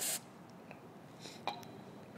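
Aerosol carburettor cleaner sprayed through a carburettor main jet: one short hissing burst at the start, then a faint click about a second and a half in.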